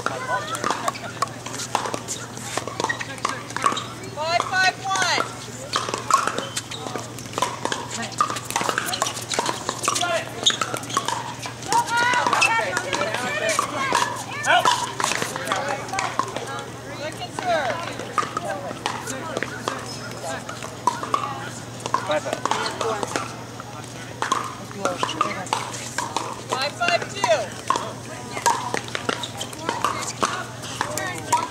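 Pickleball paddles hitting plastic balls: sharp hollow pops in irregular succession from several courts at once, over a background of people's voices.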